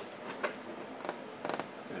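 A few light clicks and taps of the plastic windshield being handled against the scooter's front fairing: a single click about half a second in, then a quick cluster of several clicks a little past a second and a half.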